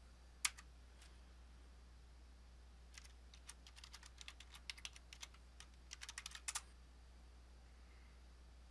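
Computer keyboard keys clicking as a password is typed, in a quick run of keystrokes from about three seconds in until shortly before seven seconds. A single louder click comes about half a second in.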